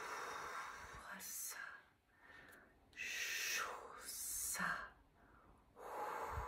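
A woman's voice making a series of forceful breathy exhalations and whispered hissing sounds, about five separate breaths, without a pitched voice.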